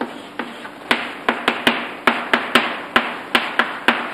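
Chalk writing on a blackboard: a quick, irregular run of sharp taps as the chalk strikes the board.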